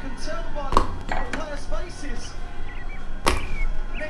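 Two sharp knocks, one a little under a second in and a louder one near the end with a brief ringing tail: pieces of fruit tossed into a glass blender jar, over a commentator's voice.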